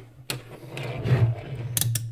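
Handling noise from a digital multimeter and its test leads as the leads are pulled from the meter's jacks and its buttons are worked: rubbing and scraping, with a few sharp clicks, two in quick succession near the end. A steady low hum runs underneath.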